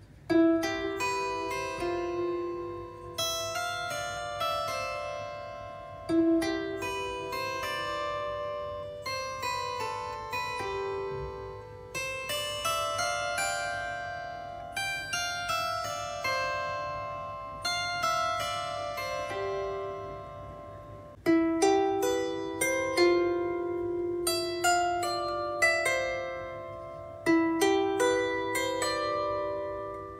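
A 16-string Aklot solid-body bowl lyre harp, plucked by fingers, playing a slow tune of single notes and chords. Each string rings on and fades under the next pluck. Its strings are about nine months old.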